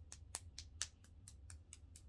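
Light, fast EFT tapping: fingertips tapping on the edge of the other hand, faint, about six or seven taps a second.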